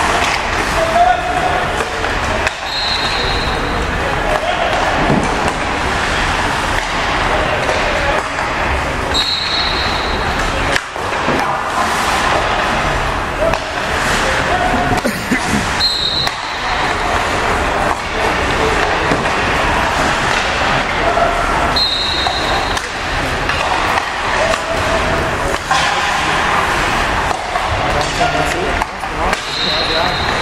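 Ice hockey practice in an echoing indoor rink: sticks and pucks clacking, pucks knocking against the boards and skates scraping the ice, under indistinct voices. A brief high-pitched tone sounds about every six or seven seconds.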